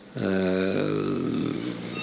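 A man's drawn-out, held hesitation sound, a voiced "э-э" at a steady pitch, picked up by a lecture microphone. It trails off after about a second.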